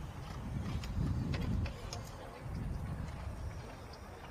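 Hoofbeats of a show-jumping horse cantering on grass, muffled and low, over a rumbling background that swells twice.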